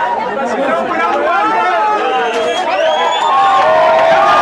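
A crowd of people talking loudly over one another, with a few voices raised above the rest.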